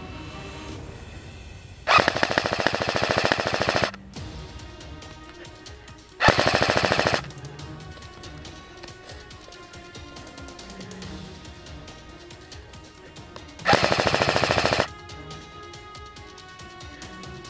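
Electric airsoft rifle (APS ASR110 AEG) firing on full auto in three bursts: one of about two seconds near the start, one of about a second some six seconds in, and one of about a second near the end, each a rapid clatter of shots. Background music plays underneath.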